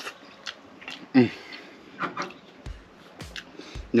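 A man chewing crispy-coated fried chicken wings, with scattered short crunches and clicks. About a second in comes a short, closed-mouth "mm" of enjoyment.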